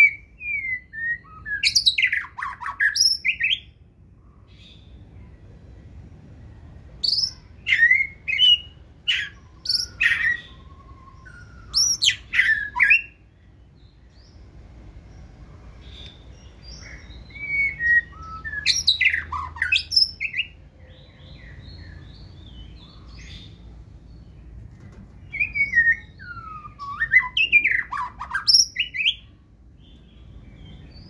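White-rumped shama singing in the wild-type 'forest voice' style. It gives four bursts of varied whistled phrases with quick rising and falling notes, separated by pauses of a few seconds.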